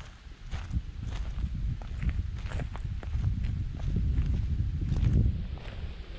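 Footsteps crunching through dry fallen leaves, irregular steps a few times a second over a low rumble.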